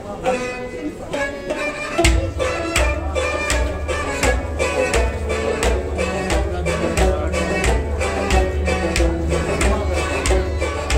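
Kashmiri Sufi music ensemble playing, with sustained melodic instruments. A hand drum comes in about two seconds in and keeps a steady, deep beat.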